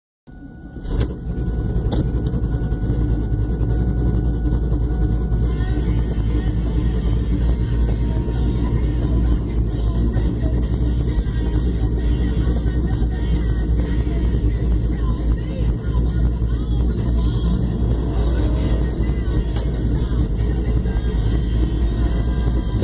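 1998 Pontiac Trans Am's LS1 V8 running at low speed as the car rolls along, a steady low rumble heard from inside the cabin.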